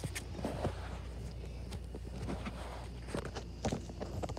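Footsteps in flip-flops stepping from one wooden stepping stump to the next: a few scattered light taps and scuffs.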